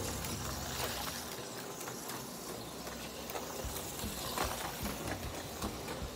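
HO-scale slot car running on a plastic track: a faint steady mechanical whir with a few light clicks.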